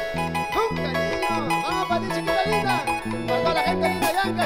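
Live Latin dance band playing an instrumental passage: a stepping bass line, percussion, a lead melody with bending notes, and a harp.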